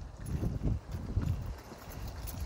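Soft, irregular low thuds and rumble, much quieter than the voice around them.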